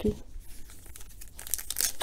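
Foil wrapper of a 2019 Donruss Optic football card pack crinkling as it is handled and torn open, louder near the end.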